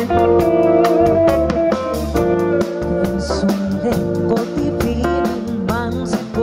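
Live pop band playing an instrumental passage: electric guitar over keyboards, with a steady drum beat.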